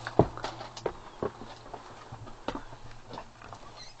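Footsteps and light knocks on the floor of an RV, a handful of irregularly spaced thuds, most of them in the first second and a half.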